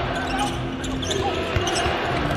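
Basketball being dribbled on a hardwood court during live play, over steady arena background noise.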